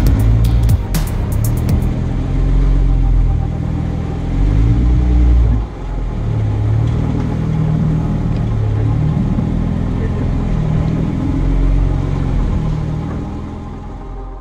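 Jeep Wrangler engine running under load at crawling speed, its revs slowly rising and falling with the throttle as the tire climbs over rock ledges.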